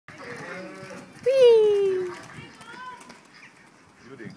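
A long, loud animal call about a second in, falling steadily in pitch for nearly a second, with fainter, shorter calls or voices around it.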